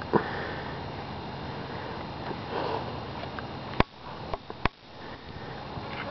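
A short sniff just after the start and a softer one about two and a half seconds in. A few sharp clicks follow around four seconds in.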